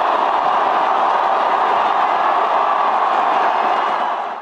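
Large crowd of football fans cheering in celebration, a steady, loud wall of crowd noise.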